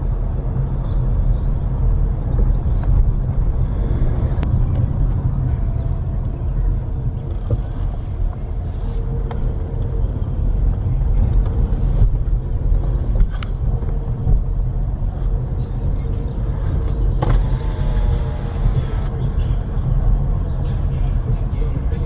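Car driving slowly along a street, heard from inside the cabin: a steady low rumble of engine and tyres on the road, with a few sharp clicks or knocks along the way.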